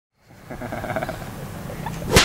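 A rough, sustained roar-like growl that starts a moment in and carries on.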